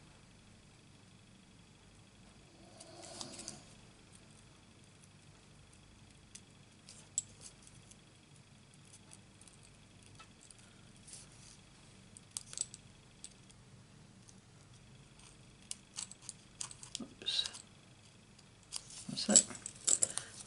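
Small scissors making quiet, scattered snips through thin paper, with long pauses between cuts. Just before the end there is a louder clatter as the scissors and the key ring clipped to them are put down on the table.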